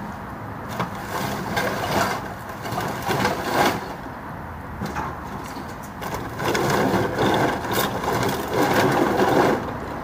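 A cat eating wet food from a plastic tray: close, clicky chewing and licking with small scrapes on the tray, in two spells, from about a second in to about four seconds and again from about six seconds to near the end.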